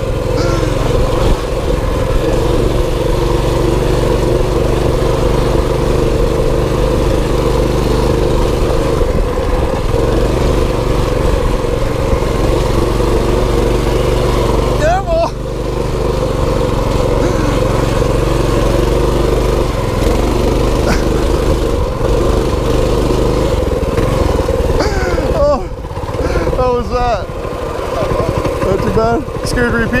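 Mini bike's small engine running steadily under way, its note dipping briefly about halfway through and again near the end, with voices calling out over it.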